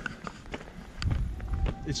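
Footsteps of someone walking uphill, with short, faint steps about every half second.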